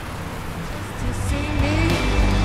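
Steady city traffic hum growing louder, with music fading in about halfway through: a deep bass note and a melody line that glides in pitch.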